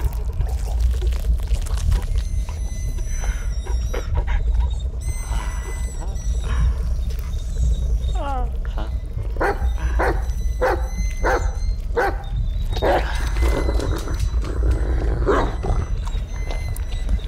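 Horror sound design: a low rumbling drone with high, thin ringing tones over it. From about eight seconds come muffled, animal-like cries in short pulses, about two a second, then a longer, denser stretch near the end.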